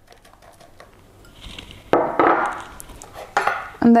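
Small ceramic bowls and a metal spoon being handled on a table. There are two sudden clatters, about two seconds in and again about a second and a half later.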